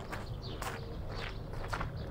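Footsteps of several people walking on a gravel and dirt surface, uneven and overlapping.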